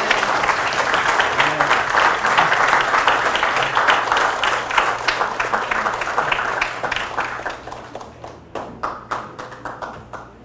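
Congregation applauding: dense clapping that starts suddenly, stays full for about seven seconds, then thins out into a few scattered claps near the end.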